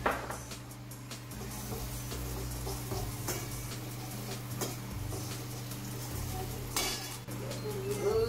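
Metal spoon stirring and scraping frying onions in a stainless steel wok, with a few sharp clinks of metal on metal about three, four and a half and seven seconds in.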